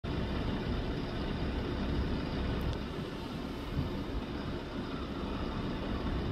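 Steady low rumbling background noise with no distinct events, in keeping with a roadside pull-over with traffic about.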